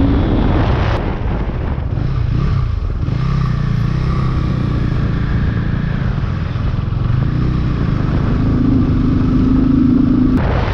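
Motorcycle engine running while riding on the road, with wind noise on the microphone. The engine note dips about two seconds in, then rises again and grows stronger near the end.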